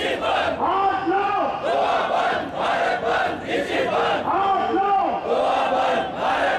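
Large crowd of protesters shouting slogans in unison, short chanted phrases repeated one after another in a steady rhythm.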